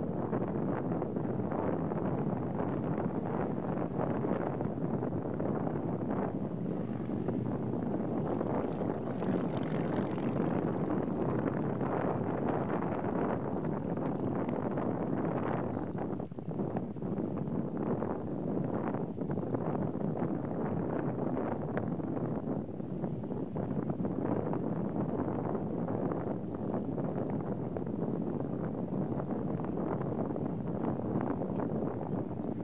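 Wind blowing across the microphone: a steady rushing noise with frequent short buffets from gusts.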